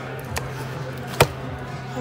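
A hand working at a cardboard takeout box on a table: one sharp tap a little past the middle, with a couple of lighter taps before it, over a steady low hum.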